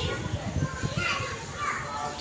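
Children playing, their voices and shouts mixed in the background.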